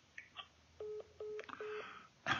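A phone's call-ended tone: three short, evenly spaced beeps at one pitch, signalling that the call has been hung up, after a couple of faint clicks.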